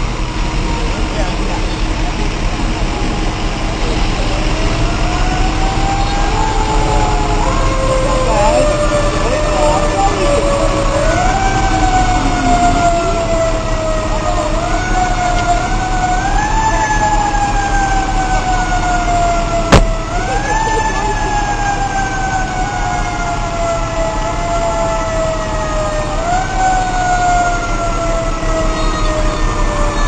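Fire engine siren sounding over and over, each quick rise in pitch followed by a slow fall, every two to three seconds, over the rumble of the trucks' engines. A single sharp knock comes about two-thirds of the way through.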